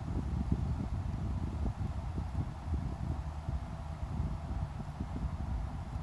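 Low, irregular rumbling and rubbing of hand-handling noise close to the microphone, as fingers press hard on the stiff rubber pads of an unplugged synthesizer and hold the device.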